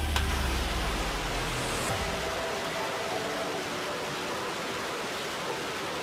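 Salvo from truck-mounted multiple rocket launchers: a continuous rushing roar of rockets leaving the tubes, with a deep rumble in the first two seconds. Faint background music with held tones runs underneath.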